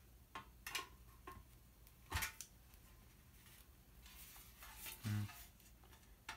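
A few light metallic clicks and clinks, the loudest about two seconds in, from a screwdriver and small parts being handled against a steel monitor chassis.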